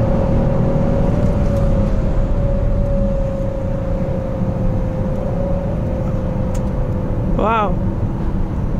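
Inside the cabin of a Peugeot 407 with the ES9A V6 engine, cruising at highway speed: a steady low road and tyre rumble under a steady engine hum that sinks slightly in pitch. There is a brief voice sound near the end.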